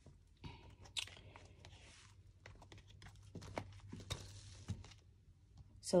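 Soft rustling and crinkling of clear plastic zip cash envelopes being handled and flipped in a leather A6 ring binder, with scattered light clicks and taps.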